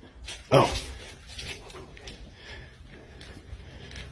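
A short, loud vocal cry about half a second in, sliding down in pitch, then quieter room noise with small knocks.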